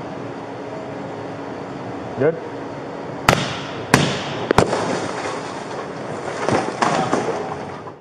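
Three sharp blows about half a second apart as a police officer breaks out a car's side window, over a steady background hum.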